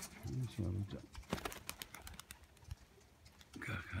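A man's voice murmuring briefly, then a scatter of light sharp clicks, and near the end a man's voice again.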